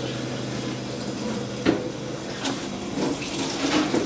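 Water running from a tap into a plastic gallon jug at a sink, with a few light knocks from the jug.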